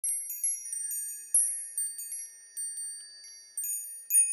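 Chimes ringing: many high, clear metallic notes struck one after another at an irregular pace, each ringing on and overlapping the next.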